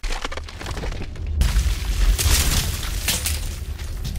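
Logo-reveal sound effects: a deep steady rumble with several bursts of cracking, crumbling stone, the stronger ones about one and a half, two and three seconds in.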